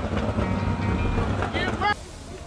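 A low steady rumble, with a man's voice calling out briefly near the end, before the sound cuts off suddenly.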